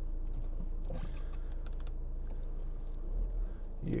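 In-cabin sound of a 2013 Audi Q3 2.0 TDI diesel on the move: a steady low engine and road rumble, with a few faint clicks about a second in.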